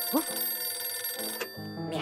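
Old-fashioned telephone bell ringing, a cartoon sound effect for a candlestick telephone, over background music; the ringing cuts off suddenly about one and a half seconds in as the receiver is picked up.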